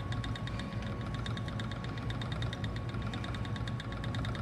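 Ashford Elizabeth 2 spinning wheel running under steady treadling, its flyer and bobbin whirring with a rapid, even ticking over a low hum as yarn is drawn on.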